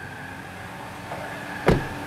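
The door of a 2020 Honda Brio RS hatchback is shut once with a single sharp thud near the end, over a faint steady background hum.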